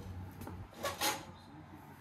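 Two brief handling sounds close together about a second in, over a faint steady low hum: a hand touching the head of an idle industrial sewing machine.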